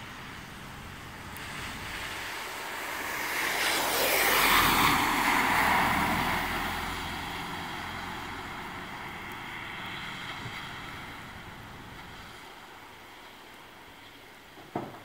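A small SUV driving past close by on a rain-soaked road, its tyres hissing through the water on the pavement. The hiss swells to its loudest about four to five seconds in, then slowly fades as the car moves away.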